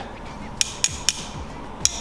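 Sharp metallic clicks from a small metal tripod and ball head being handled and adjusted with an Allen key, three clicks in all.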